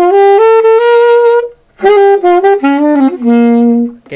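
Saxophone played with a saxophone mute/silencer fitted: two short phrases of notes, the first climbing step by step, a brief gap about one and a half seconds in, the second ending on a held low note. It still sounds loud with the mute in, and the player judges the mute useless.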